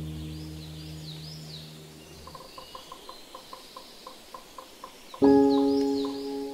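Soft, slow piano music: a low chord fades away, a quiet short note repeats about four times a second, and a new chord is struck about five seconds in. Faint birdsong chirps sit over it throughout.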